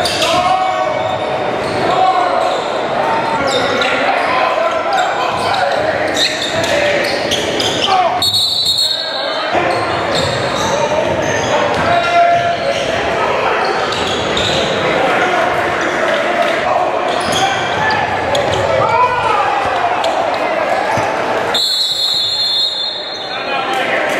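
Live basketball game sound in a gymnasium: a basketball dribbling on the hardwood court amid crowd chatter and players' voices, echoing in the large hall.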